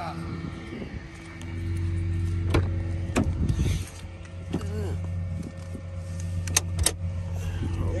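A tow truck's engine running steadily, its hum growing louder about a second and a half in, with a few sharp clicks from the car's controls and door.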